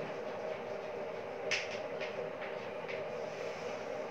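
Chalk writing on a blackboard: four short taps and scrapes from about a second and a half in, the first the loudest, over a steady room hum.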